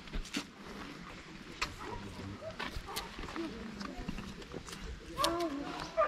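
A few sharp, irregular crunches of raw sugar cane being bitten and chewed for its juice, under faint low voices.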